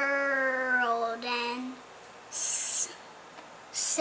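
A young child's voice drawing out the word 'world' in one long sing-song note that slowly sinks in pitch and stops about two seconds in. A short 'sss' hiss, the start of the next word, comes about half a second later.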